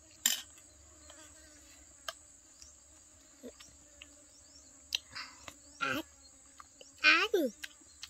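Steady high-pitched drone of insects in a field, with a few light clicks of forks and spoons against plastic bowls. A short vocal sound comes about six seconds in, and a louder falling voice, the loudest sound, about a second later.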